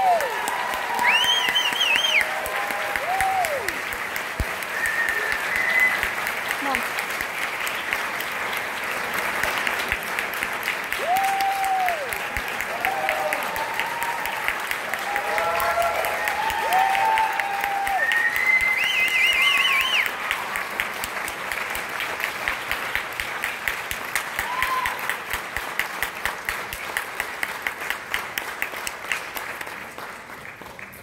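Audience applauding at the end of a concert band piece, with cheering shouts and two warbling whistles. The clapping thins out and grows quieter over the last several seconds.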